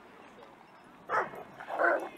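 Two short, loud calls about half a second apart, near the end, over faint outdoor background.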